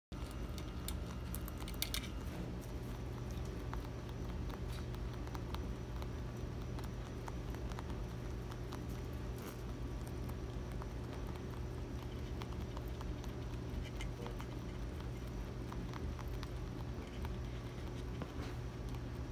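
Angora rabbits chewing feed pellets and hay: many small crunching clicks, a little denser about two seconds in, over a steady low hum.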